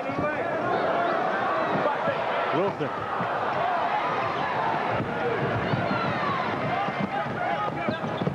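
Arena crowd noise during live college basketball play on a hardwood court, with a basketball being dribbled and bounced.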